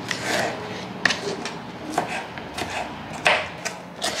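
A small kitchen knife dicing red bell pepper strips on a plastic cutting board: irregular, uneven chopping taps as the blade hits the board, one louder tap near the end.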